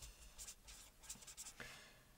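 Felt-tip marker writing on paper: faint scratching strokes of the pen tip across the sheet.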